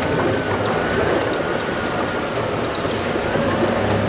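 Open safari vehicle driving slowly along a dirt track: steady engine hum with tyre and wind noise.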